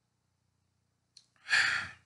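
A man's short, audible breath through the mouth, preceded by a faint lip click, about a second and a half in; the rest is quiet room tone.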